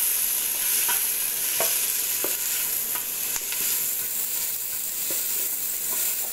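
Sliced onions and garlic sizzling in hot oil in a pressure cooker pot, stirred with a wooden spoon that scrapes and knocks lightly against the metal base every second or so. They are being sautéed lightly, not browned.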